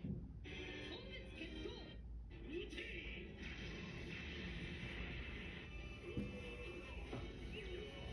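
Anime episode audio playing in the background: music with characters' voices speaking over it at times.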